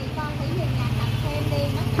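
Small motorbike engine running close by, a low steady putter, with faint voices underneath.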